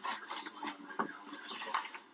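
A string of irregular clinks, clatter and rustling, with the longest spell about one and a half seconds in.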